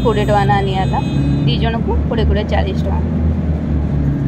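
City bus engine running with a steady low drone, heard from inside the passenger cabin.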